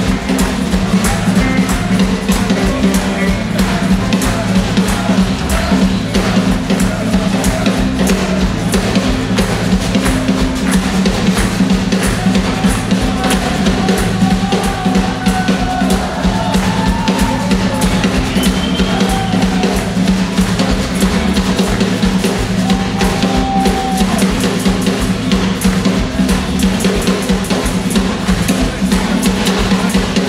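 Live blues band jam with several electric guitars and a full drum kit playing an instrumental stretch with a steady beat. A lead line with bent notes comes in around the middle.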